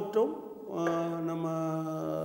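A man's voice: a short sound, then one long vowel held at a steady pitch for well over a second, a drawn-out hesitation sound in the middle of speaking.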